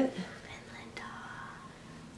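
Soft whispered speech, much quieter than the normal talking on either side.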